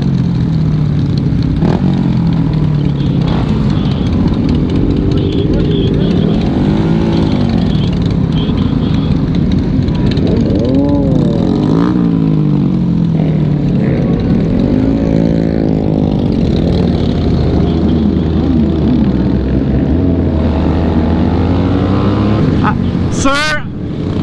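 Several motorcycle engines revving up and down in slow-moving group traffic over steady wind and road noise. Near the end a higher-pitched rev rises and falls sharply.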